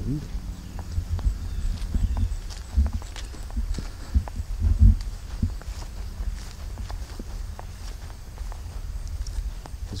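Footsteps walking across mown grass: an irregular run of soft, low thuds, the loudest a little before five seconds in.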